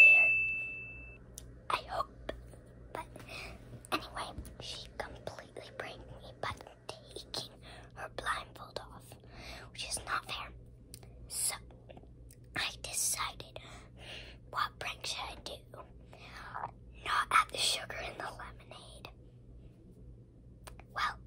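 A girl whispering in short bursts of talk throughout. At the very start a single bright ding rings out and fades away over about a second.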